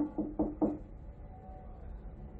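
Knuckles knocking on a wooden door: four quick knocks in the first second.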